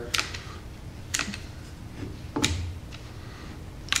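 Cordless hot glue gun being worked along a joint: a few sharp clicks spaced about a second apart over a faint low hum.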